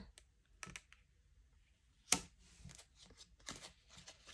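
Tarot cards being handled on a wooden table: faint clicks and light slides of the cards as they are placed and gathered, with one sharper snap about two seconds in.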